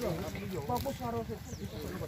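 Men's voices talking over one another in a crowd, with steady background chatter.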